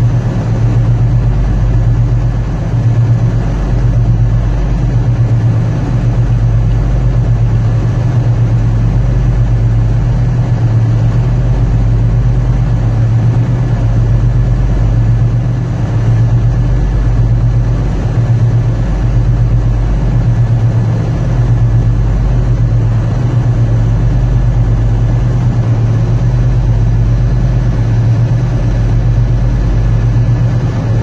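Tugboat's diesel engines running steadily: a loud, deep hum with a slight regular pulse.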